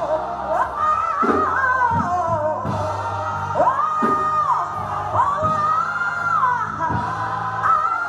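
Gospel singing by a church choir, with long held notes that swoop up into them, over a steady low instrumental accompaniment.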